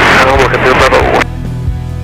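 A man's voice on the aircraft radio ends about a second in, and background music with steady held notes takes over.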